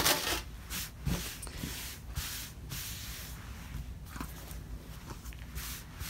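Hands handling, turning over and smoothing a small quilted fabric piece on a cutting mat: soft, uneven rustling and rubbing of cotton and batting.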